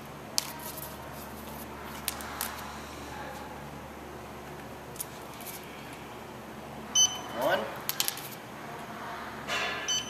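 Handheld RFID reader giving short high beeps as it reads the tags, one about seven seconds in (the loudest sound) and another near the end, each beep confirming a tag read. A few light handling clicks come before.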